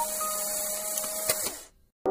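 Steady hissing noise with a faint held tone from a background music soundtrack, with a click a little past the middle; it fades out sharply near the end, leaving a moment of silence.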